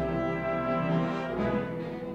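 Orchestra playing classical ballet music, held chords that change about halfway through.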